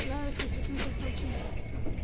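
Brief speech, a few words, over a steady low background hum.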